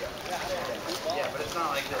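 People's voices talking nearby over a steady wash of water sloshing and splashing, where a packed school of large fish is churning at the surface.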